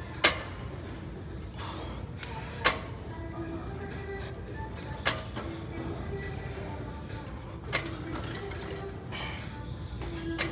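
Weight stack of a Nautilus Nitro leg extension machine giving a sharp clack once per rep, four times about two and a half seconds apart, over background music.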